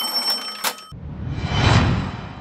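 A bright, bell-like ding like a cash-register chime rings for about a second as an edited-in sound effect. It is followed by a whoosh that swells up and then fades away as a transition effect.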